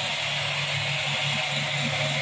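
Steady low hum with an even hiss underneath: constant background machine or room noise with no distinct events.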